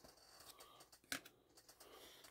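Near silence with a few faint light ticks of trading cards being handled, one a little more distinct about a second in.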